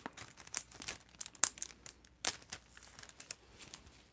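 Gift wrapping paper being crinkled and torn open by hand, with irregular crackling and a few sharper snaps as it rips.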